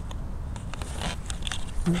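Handling noise from a camera being moved and set down: a low rumble on the microphone with a few light clicks and taps, and a voice starting at the very end.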